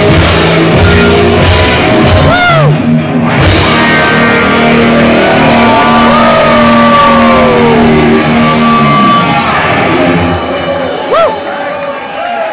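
Live rock band playing loud with electric guitars and drums, with long held notes and sliding pitches. The music drops away about ten seconds in.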